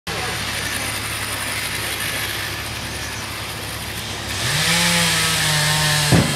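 Excavator diesel engine running, then revving up about four seconds in and holding at the higher pitch.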